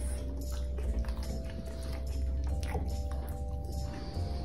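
Background music, with a French bulldog chewing a soft-baked dog treat over it.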